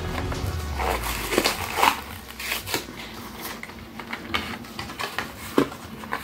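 Plastic blister packaging of a Hot Wheels die-cast car crackling and crinkling as it is pulled open by hand, in irregular clicks and snaps, while the car is freed from it.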